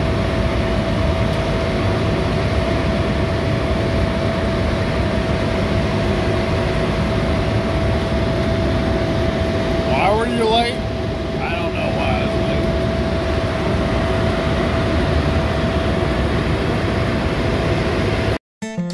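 Steady road and wind noise from a motorcycle riding at a constant speed, with wind rushing over the microphone and the engine running underneath. A brief voice comes through about ten seconds in.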